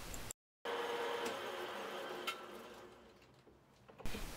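Small lathe running with a faint steady whine, broken by a brief dead gap just after the start and fading out about three seconds in; one light tick a little past two seconds.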